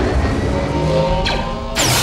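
Sci-fi battle sound effects: a loud, engine-like whine with falling tones, cut through by two sharp zaps like blaster shots, the second and louder one just before the end.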